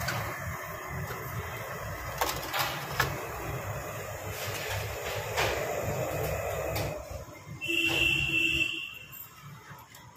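Steady background noise at a street food stall where medu vadas are being fried and drained, with a few sharp metal clicks. About eight seconds in comes a loud steady tone lasting about a second, after which the noise falls away.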